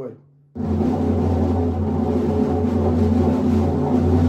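Press roll (buzz roll) on a tom-tom with wooden drumsticks: a smooth, continuous buzzing roll over the drum's low ringing tone, starting about half a second in. Played away from the centre of the head, it has little attack and sounds more like a sustained tone.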